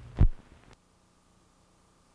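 A single loud, low thump about a quarter of a second in. Then the sound cuts off suddenly, well before a second has passed, leaving near silence with a faint hum.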